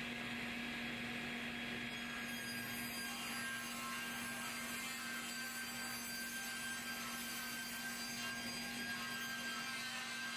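Steady hum of woodshop machinery running, with a constant tone and no cuts or bursts.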